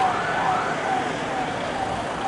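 Siren of a police convoy vehicle, a repeating falling wail about twice a second, slowly fading, over the noise of passing traffic.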